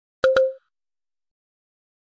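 A short plop sound effect: two quick clicks with a brief ringing tone, about a quarter second in.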